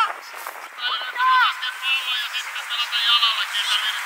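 Several children's high-pitched voices shouting and calling out, overlapping one another.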